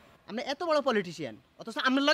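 A man speaking in a strongly quavering, wailing voice, in two phrases with a short break about a second and a half in.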